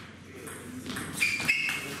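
A table tennis ball bouncing on the table, a few short, sharp ringing ticks in the second half, heard over a faint murmur from the hall.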